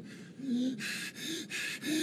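A man's breathless, gasping laughter: a few short breaths in quick succession.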